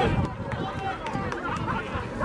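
Mostly voices: a man's commentary ending in a short laugh, then scattered voices of a crowd.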